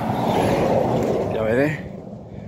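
Volvo articulated lorry passing close by, a loud rush of tyre and engine noise that fades away a little before the end.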